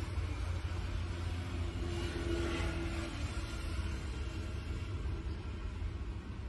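Steady low rumble with a faint hiss over it, unbroken background noise with no distinct events.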